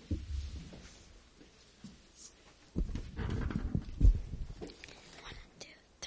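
Soft low thumps and rustling of handling noise on a studio microphone, loudest about four seconds in, with faint whispering.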